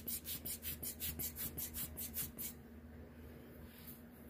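Quick, even puffs of air from a hand-squeezed alcohol ink air blower (Tim Holtz blower tool), about six short airy bursts a second, pushing wet ink outward into petals. The puffs stop about two and a half seconds in.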